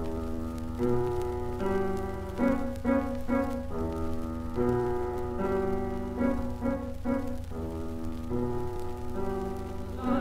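Solo piano playing a song's introduction, a melody of single notes over chords, on a 1953 recording. A steady low hum of the old recording runs underneath.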